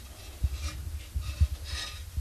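Handling of a metal baking pan as it is tilted to spread a little oil: faint rubbing and scraping, with a few soft low bumps.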